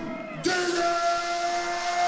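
Distorted electric guitar in a live heavy-metal band, holding one long, steady note that comes in about half a second in after a short lull, with the drums silent underneath.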